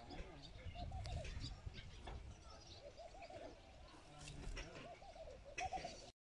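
Faint birds calling outdoors: short high chirps and repeated lower curving calls, over a low rumble.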